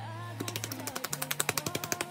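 Rapid light slaps of hands patting the skin of the face, about a dozen a second, starting about half a second in, over soft background music.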